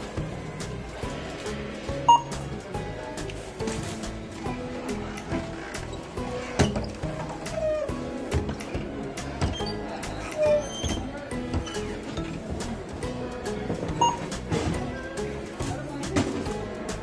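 Background music throughout, with two short beeps from a self-checkout scanner, about two seconds in and near the end, and light clicks of items being handled and bagged.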